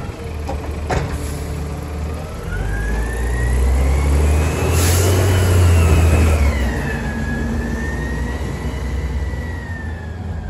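Natural-gas engine of a Mack LEU garbage truck with a Labrie Automizer side-loader body pulling away and driving past, the rumble building to its loudest midway. A whine over it rises and then falls in pitch. There is a knock about a second in and a short hiss about five seconds in.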